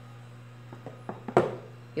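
A few faint taps and then one sharp knock about a second and a half in, as a cut bar of firm homemade soap is handled and set down against the other bars on the tray, over a low steady hum.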